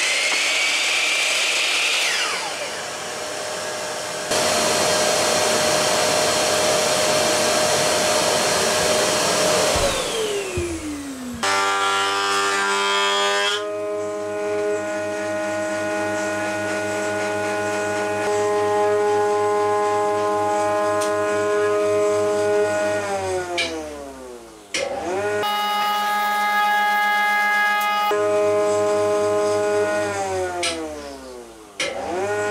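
A Bosch mitre saw cutting through a wooden board, its blade spinning down about ten seconds in. Then a benchtop thickness planer runs with a steady whine as boards are fed through; it spins down, starts again and spins down once more near the end.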